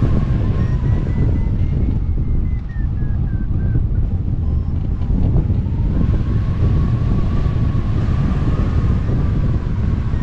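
Wind rushing over a glider-mounted microphone in flight, a steady low rumble, with a faint thin tone behind it that slowly wavers in pitch.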